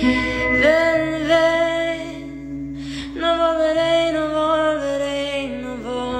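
A young woman sings a slow song in Spanish to electric guitar accompaniment. She sings two long, held phrases with a breath between them about three seconds in.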